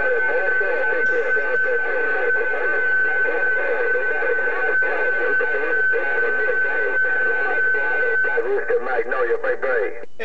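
President HR2610 radio receiving a distant station: a garbled, thin-sounding voice with a steady high whistle over it, which stops about eight seconds in.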